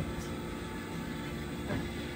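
Steady room background noise: a low rumble with a constant hum, with a faint brief sound near the end.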